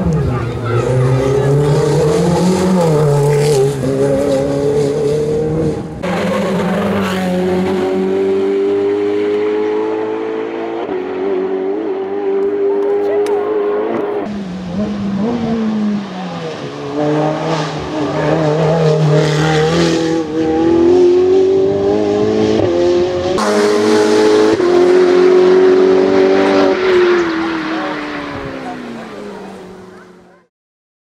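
Ferrari 488 Evo's twin-turbo V8 race engine under hard acceleration, its note repeatedly climbing and dropping through gear changes. The sound breaks off and restarts abruptly several times, then fades out at the end.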